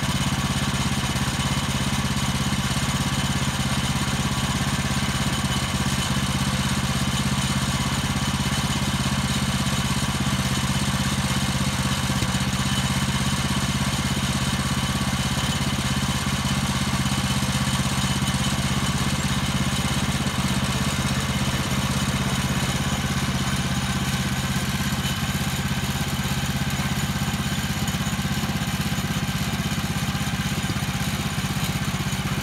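Small gasoline engine of a portable bandsaw mill running steadily at an even speed, with no revving or load changes.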